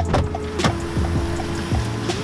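Background music: a beat with repeated falling bass notes, quick ticks and steady held notes.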